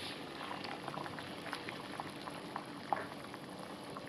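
Water at a rolling boil in a stainless steel saucepan: a steady bubbling made of many small irregular pops, with one slightly sharper pop about three seconds in.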